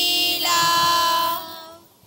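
A high voice, a child's or a woman's, singing a short phrase that ends on a long held note, which fades away near the end.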